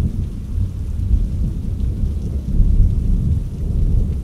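Low, rolling thunder rumble over steady rain, running as a continuous background ambience.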